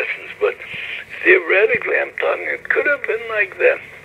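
Speech only: a man talking, in a lecture.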